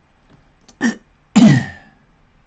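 A man clearing his throat twice: a short burst, then a longer, louder one about half a second later.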